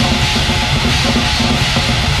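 Black metal recording playing an instrumental passage: rapid drumming under heavily distorted guitars, loud and unbroken.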